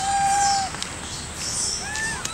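Rhesus macaques calling with drawn-out, pitched coos: one long level call in the first half second or so, then a shorter call that rises and falls near the end.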